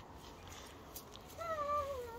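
A high, drawn-out, wavering meow-like call from an animal, starting about one and a half seconds in.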